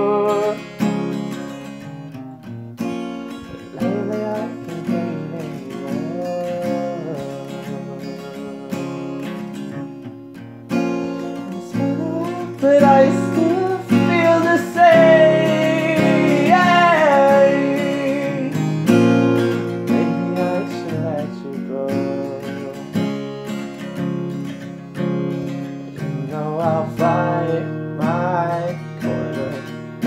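Acoustic guitar strummed and picked through the whole stretch, with a voice singing a wordless line in the middle that bends and falls in pitch.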